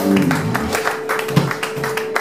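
Live blues-rock band ending a song: an electric guitar note rings on steadily over the last low notes, with scattered sharp hits of clapping coming in.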